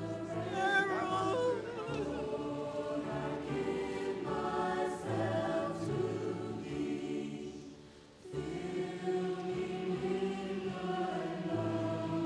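Church choir singing a hymn together in held notes, one voice sliding up and down above the others near the start. The singing falls away briefly between phrases about eight seconds in, then comes back in.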